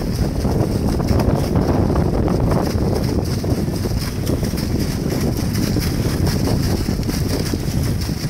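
Wind buffeting the microphone as a steady low rumble, over the sputtering splash of an air-lift hand-drilled well: air driven down a 2-inch PVC drill stem pushes sandy water and cuttings out of the stem's top spout onto the mud pit.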